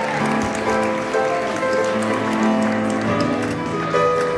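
Live music from an upright piano: held chords and notes played steadily, the accompaniment of a sung cover.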